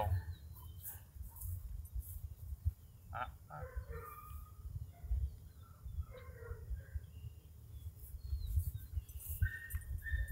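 Wind rumbling on the microphone in an open field, with scattered bird chirps around the middle and near the end.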